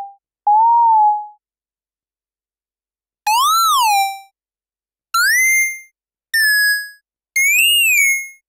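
Artikulator iPad app's synthesized tones sounding as a finger draws strokes: five short gliding notes with silent gaps between them. The first is a plain pure tone; the later four are brighter with overtones, bending up and down in pitch and sitting higher toward the end.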